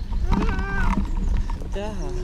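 Stroller wheels rumbling over a rough, cracked asphalt path, with a small child's drawn-out voice sounds over it, one held note about half a second in. A man's brief spoken word comes near the end.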